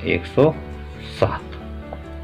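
Pencil writing on a sheet of drawing paper on a hard desk, with one sharp tap a little past a second in.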